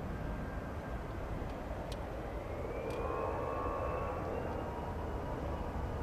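Airbus ACJ319's CFM56 turbofan engines spooling up on the runway for takeoff: a whine that rises in pitch from about two seconds in, over a steady rumble that swells a little louder.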